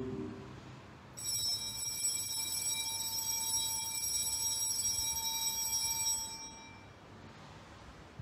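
Altar bells rung at the elevation of the host during the consecration of the Mass: a cluster of small bells shaken in one continuous ringing peal, starting about a second in, lasting about five seconds and fading away shortly before the end.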